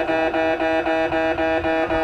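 Japanese railway level crossing alarm ringing, an electronic bell repeating its chime about three times a second as a train approaches.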